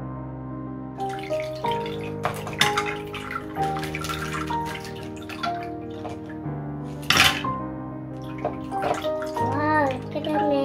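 Gentle piano background music over water splashing and trickling into a glass dish as pencils are pulled out of a water-filled plastic bag and the water runs out through the holes, with one louder splash about seven seconds in.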